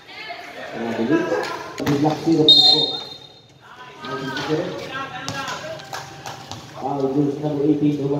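Voices calling out during a basketball game, with a short blast of a referee's whistle about two and a half seconds in and a few thuds of the ball bouncing on the concrete court.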